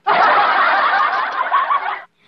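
Canned laughter: a group of people laughing and snickering together, dense and steady, starting and cutting off abruptly.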